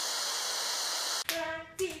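Steady television static hiss that cuts off suddenly just over a second in, followed by a child's voice and a hand clap.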